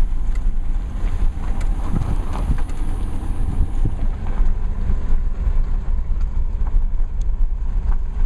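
Steady low rumble of a car rolling slowly along a dirt road, with wind buffeting the microphone.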